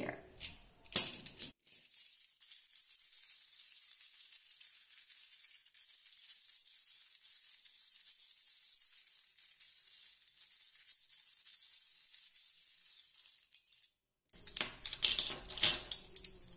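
Seashells clicking against each other in a sheer drawstring bag and being set down on a wooden tabletop: a few sharp clicks just after the start, then a long stretch of faint hiss, then a quick run of clinks and knocks near the end.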